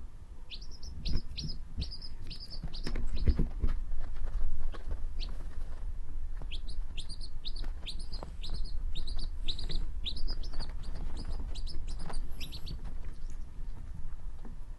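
Quail chick peeping: runs of short, high, downward-sliding peeps, about three a second, in two bouts with a pause in between. Soft thumps and rustling underneath, loudest a few seconds in.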